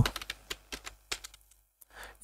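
Computer keyboard typing: a handful of separate keystroke clicks in the first second or so as a short word is typed.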